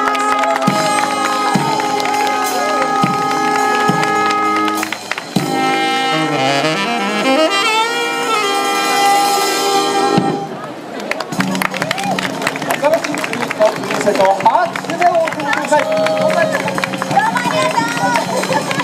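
Small brass band of trumpet, saxophone, sousaphone and drums playing live: a held chord punctuated by regular drum beats, then a wavering, sliding horn run. About ten seconds in, the horns break off and lighter, quieter drumming carries on.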